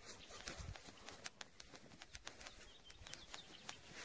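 Near silence: faint outdoor quiet with scattered light clicks.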